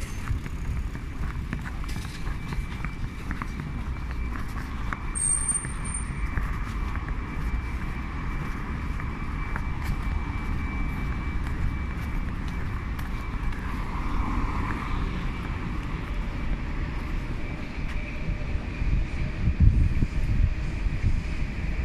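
Steady city road traffic, a continuous low rumble of passing cars and trucks, with a short high-pitched squeak about five seconds in.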